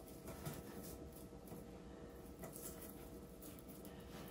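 Faint rustling and a few light ticks of a wired pip-berry garland being handled and wrapped around a wooden post, over quiet room tone.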